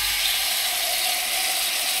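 Whole masala-coated fish frying in hot oil on a dosa griddle (tawa): a steady, loud sizzle.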